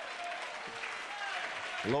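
A congregation applauding, with a few voices calling out over the clapping.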